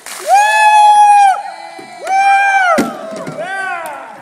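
A person screaming as ice water is dumped over their head: two long, high-pitched screams and a shorter third, after a brief splash of water at the start. A single sharp knock comes near the end of the second scream.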